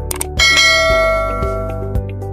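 Notification-bell sound effect: two quick clicks, then a bright bell ding about half a second in that rings out and fades over about a second. It plays over background music with a steady beat.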